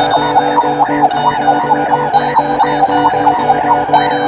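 Experimental electric guitar played through effects pedals: a dense layer of held, ringing tones with a fast, even pulse running through it.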